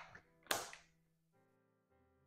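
Quiet background music with held notes, over a short papery swish of a tarot deck being handled about half a second in.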